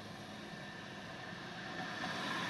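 Faint, steady hum of a stationary car heard from inside the cabin, its engine or ventilation running.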